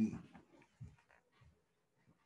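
A man's voice trails off, then near silence with two faint, short, low sounds about a second and a second and a half in: a man getting down on his knees to pray.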